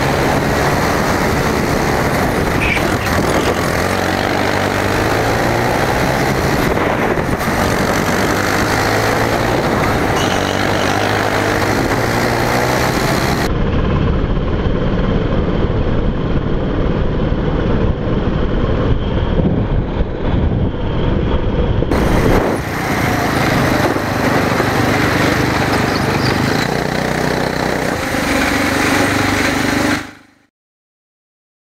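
A go-kart's small petrol engine heard from on board at full loudness, its pitch rising and falling as the kart accelerates and brakes around the track. In the last several seconds it settles into a steadier, lower running, then fades out at the end.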